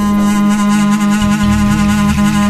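Instrumental music from a Turkish song's soundtrack: one long, steady held note with its overtones.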